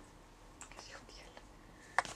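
Faint handling of a socket wrench and flywheel holder on a kart engine's flywheel nut, a few light ticks, ending in one sharp metallic click near the end.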